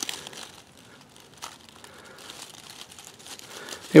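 Dry leaf mulch crinkling and rustling faintly, with scattered small crackles, as a hand and body move through it.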